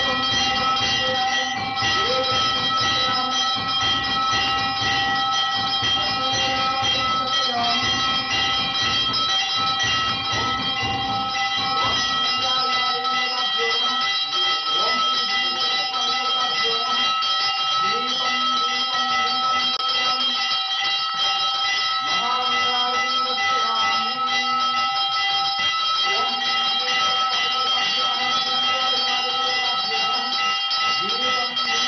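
Temple bell rung continuously during aarti worship, a steady metallic ringing with several high tones held throughout, with a voice chanting underneath.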